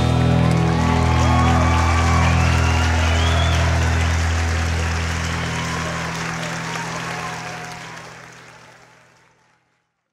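A rock band's last chord rings out on bass and guitars while a live audience applauds and cheers. The chord and the applause fade to silence a little before the end.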